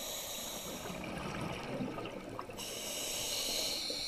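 Scuba diver breathing through a regulator underwater: a hissing inhale that ends about a second in, a burble of exhaled bubbles, then another, longer hissing inhale from about two and a half seconds on.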